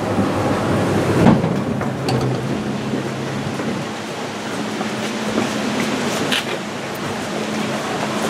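Inclined elevator car running on its track and drawing into the station: a steady low hum and rumble, with a few light knocks.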